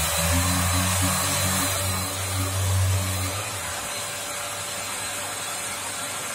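Yokiji KS-01-150-50 brushless electric random orbital sander running on a car body panel, its dust extraction drawing air, making a steady whirring hiss. A low hum sits under it for the first three seconds or so, then drops away.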